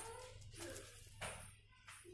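Quiet rustling of fabric handled during hand-sewing, in two short rustles about half a second apart, over a low steady hum, with a faint high pitched sound near the start.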